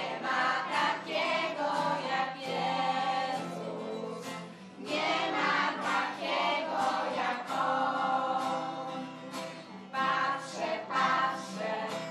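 A group of young children and a woman singing a song together in phrases, over a steady low accompaniment.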